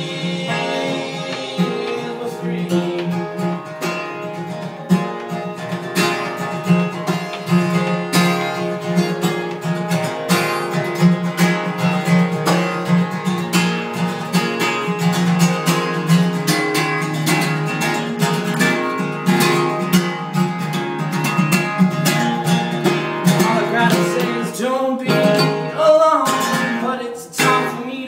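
Acoustic band music: a guitar strummed in a quick, even rhythm over sustained low notes, with a singing voice coming in during the last few seconds.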